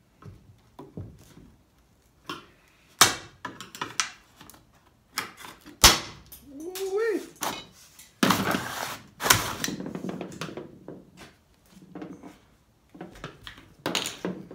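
Roof trim molding on an Oldsmobile Cutlass being pried and pulled off the roof: sharp snaps and knocks as its brittle retaining clips let go, with a longer scraping noise about eight seconds in.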